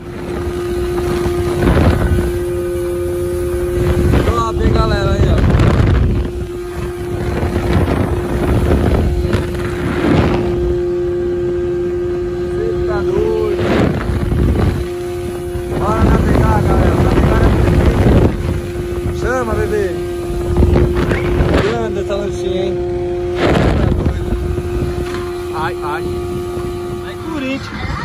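Small boat's two-stroke outboard motor running at a steady pitch under way, with wind buffeting the microphone and water rushing past the hull. The engine note drops away near the end.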